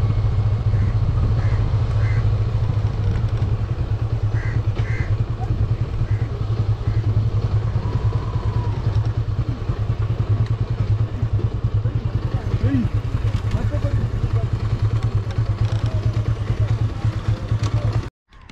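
Motorcycle engine running steadily under way, heard from the rider's seat, with a constant rush of road and wind noise over it. The level eases slightly in the later seconds as the bike slows.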